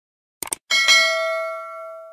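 Subscribe-button animation sound effects: a quick double mouse click, then a notification bell chiming twice in quick succession and ringing out as it fades.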